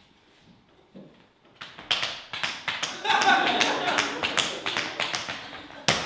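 Tap shoes striking a wooden stage floor: a quick, dense run of taps starting about two seconds in, ending in one loud stamp near the end.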